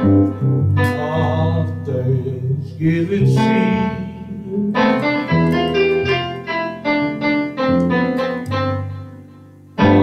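Two electronic keyboards played together: slow, held chords over a sustained low bass note, with a quicker run of single notes in the second half. The sound fades away near the end.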